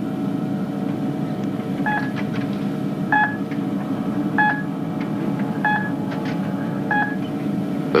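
Steady electronic hum with a short beep repeating five times, evenly about every second and a quarter, starting about two seconds in.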